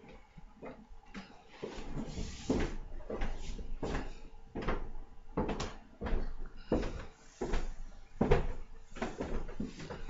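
Someone puffing on a 1950s Kaywoodie briar pipe: a string of short, irregular lip pops and sucking draws on the stem, roughly one every half second to a second, quieter for the first second or so.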